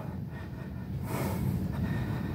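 A man breathing hard through close push-ups, with one breath about a second in, over a steady low hum.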